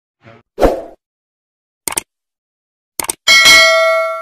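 Subscribe-button intro sound effects: a thump about half a second in, quick double clicks at about two and three seconds, then a loud bell-like notification ding near the end that rings on and fades.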